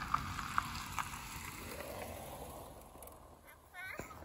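Faint outdoor noise with a few light ticks in the first second, then a young child's brief high-pitched vocal sound near the end.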